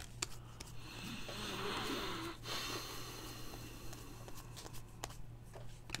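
Faint handling of a stack of trading cards: soft sliding and a few light clicks as the cards are thumbed through, over a steady low hum.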